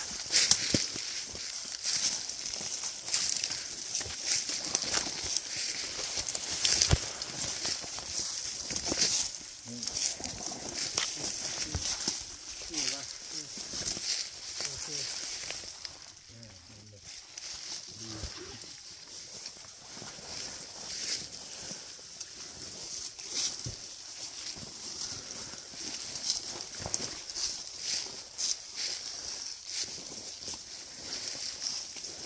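Footsteps and rustling of leaves and brush as people walk slowly through woods, with irregular crunches and snaps of twigs over a steady high-pitched hiss.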